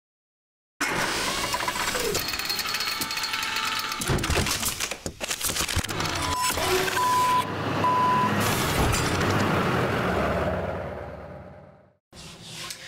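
Sound effects of an animated logo intro: dense mechanical clanking and whooshing noise with several sharp impacts, then three short electronic beeps a little after six seconds in. It starts under a second in and fades away to silence over the last two seconds.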